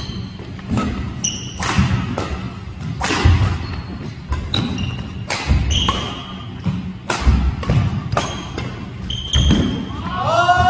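Badminton doubles rally on a wooden indoor court: rackets repeatedly striking the shuttlecock with sharp cracks, sneakers squeaking on the floor, and heavy footfalls thudding as players lunge and land, three of them loudest.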